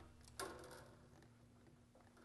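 Near silence: room tone with a faint steady hum and one soft click about half a second in.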